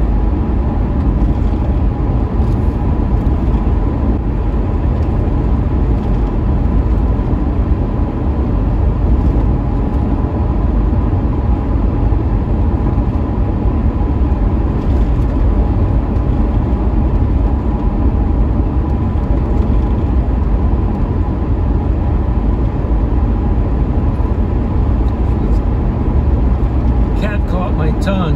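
Steady driving noise inside a Ford Crown Victoria cruising on a wet two-lane road: a low drone from the engine and the tyres on wet pavement, with a faint steady whine above it.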